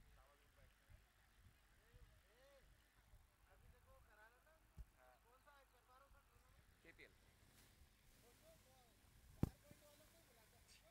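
Near silence: faint distant voices from the ground, with a small click about five seconds in and a sharper, louder click near the end.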